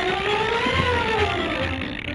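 Cartoon soundtrack sound effect: a pitched tone glides up for about a second and then slides back down, over a low, regular chugging pulse.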